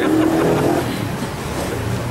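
A car engine running steadily.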